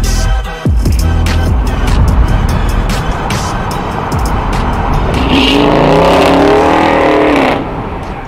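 Dodge Charger's engine and exhaust accelerating past, its pitch bending upward in the second half and falling away shortly before the end, with background music underneath.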